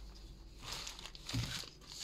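Plastic wrapping of a packaged pork joint crinkling as the package is handled and turned over, with a thump about a second and a half in.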